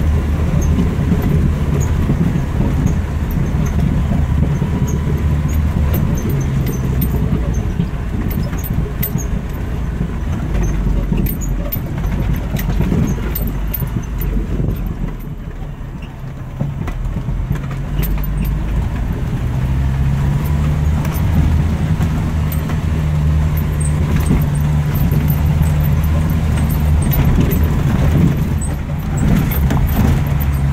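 Jeep Wrangler engine running as it drives along a bumpy dirt track, with scattered sharp rattles and clicks from the body over the ruts. It dips briefly about halfway through, then settles into a steadier, more even hum.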